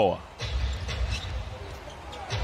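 Live basketball game sound: the ball bouncing on the hardwood court and a few faint short clicks over a steady low arena rumble.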